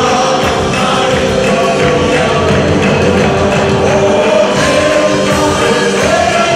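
Christian worship song: women's voices singing a melody with a congregation joining in, over instrumental accompaniment, with hand-clapping along to the beat.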